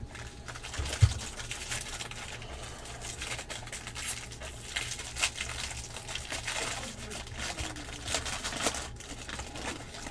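Foil wrappers of 2016 Bowman Draft super jumbo trading-card packs being torn open and crinkled by hand, a dense run of crackles and rustles. There is one low thump about a second in.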